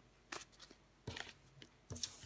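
Faint handling of tarot cards: a few short soft taps and rustles as a card is drawn and laid on a wooden table, about a third of a second in, around one second in, and again near the end.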